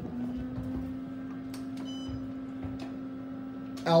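Steady hum inside an Otis hydraulic elevator car, with a few faint clicks and a short high beep about halfway through.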